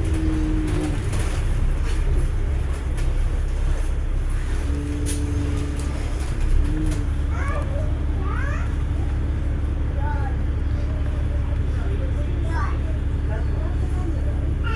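Inside a double-decker bus: the bus's diesel engine running with a steady low rumble, and a steady hum setting in about halfway through. Indistinct passengers' voices chatter in the background.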